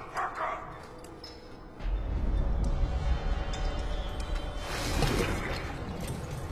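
Film soundtrack music: a deep, low drone swells in about two seconds in and holds, with a burst of hiss rising over it about five seconds in.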